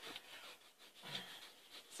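Faint rubbing of a marker being drawn across a tabletop.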